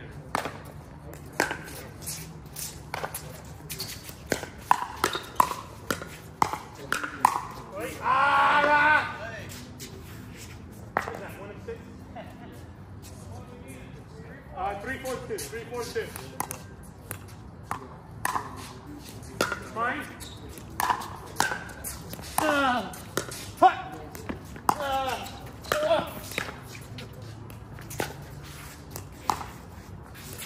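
Pickleball paddles hitting a plastic ball: sharp, short pops scattered through, with players' voices calling out between them. The loudest is a call about eight seconds in.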